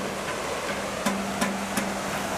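Sparse background music: light percussive ticks about three a second over a held low note.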